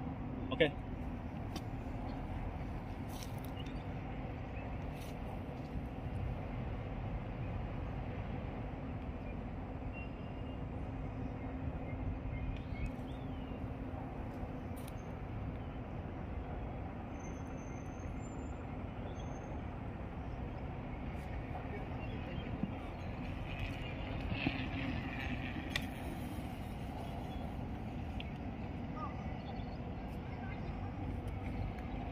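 Steady low rumble of outdoor background noise under a faint steady hum, with a few scattered faint clicks.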